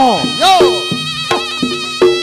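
Reog Ponorogo gamelan accompaniment: a buzzing slompret shawm playing a bending, wavering melody over steady ringing gong-chime tones and sharp kendang drum strokes.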